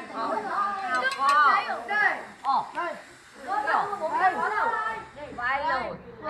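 Several people talking at once: lively group chatter with no single clear voice.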